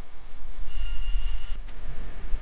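A low, steady rumble, with a faint thin high tone around the middle and a couple of light ticks just after it.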